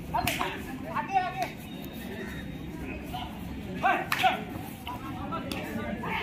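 Live kabaddi play: a few sharp cracks mixed with short shouts from the players, in bunches near the start, about a second in and about four seconds in.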